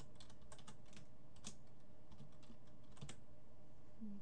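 Computer keyboard keys clicking as a name is typed: an irregular run of short key presses.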